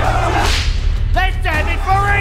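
Trailer music over a steady low drone, with a swishing whip-like sound effect about half a second in, then several men shouting in the second half.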